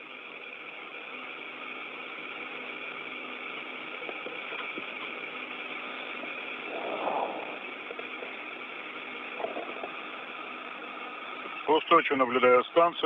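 Steady hiss and hum of an open space-to-ground radio channel, cut off above the voice band, carrying a few steady tones. There is a brief faint swell about seven seconds in.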